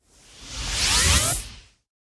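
A whoosh sound effect for an animated title, swelling over about a second with a few rising tones inside it, then fading out quickly.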